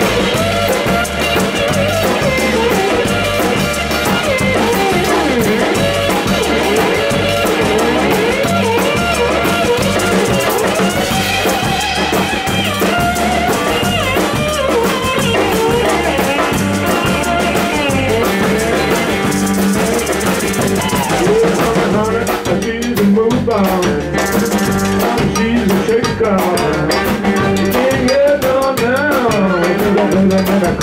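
Live rock band playing at full volume, with drum kits to the fore over guitar and bass.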